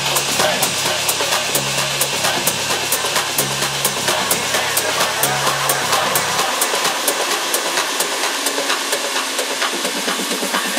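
House music from a DJ set over a club sound system, with a steady run of hi-hat ticks. The bass line cuts out about six and a half seconds in, leaving the hi-hats and a hissy top end, and the low end comes back right at the end.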